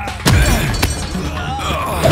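Film fight sound effects: a heavy hit about a quarter of a second in and a sharp crack just under a second in, with a man's grunt and background score underneath.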